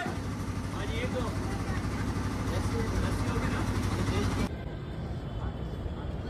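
Outdoor street ambience: indistinct chatter of several people over a steady low rumble of traffic and engines. The background changes abruptly about four and a half seconds in, to a thinner ambience with distant voices.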